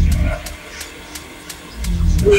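Neurofunk drum and bass track: a deep bass note at the start fades out, leaving a sparse stretch of hi-hat ticks about three a second, before the bass comes back in near the end.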